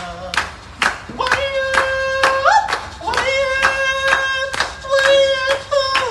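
A singer holding long sung notes over steady hand-clapping, about two claps a second.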